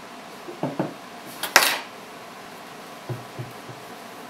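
Small tools and containers being handled and set down on a wooden workbench: a couple of light knocks, a sharp clink about a second and a half in, then a few soft taps.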